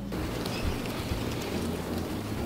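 A steady hiss of noise with a faint low hum underneath.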